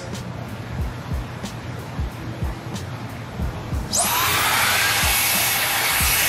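Gamma XCELL hair dryer switching on about four seconds in: a rush of air with a rising motor whine as it spins up, running on its filter self-cleaning cycle that blows air backwards out through the rear filter. Background music with a steady beat plays before it starts.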